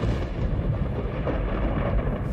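A deep rumbling sound effect that starts suddenly and carries on steadily, heavy in the low end.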